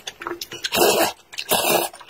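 Two loud slurps of saucy Chinese noodles close to the microphone, about a second in and near the end, with small wet mouth clicks of eating between them.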